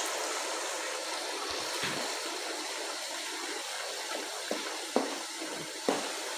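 Onion-tomato masala sizzling steadily in hot oil in a frying pan as a bowl of yogurt is poured in and stirred through with a wooden spoon, with a couple of light knocks of the spoon near the end.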